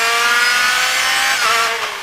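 Rally car engine at high revs in fourth gear, heard from inside the cockpit. It holds a steady high note, then about a second and a half in the pitch dips and the sound gets quieter as the throttle comes off.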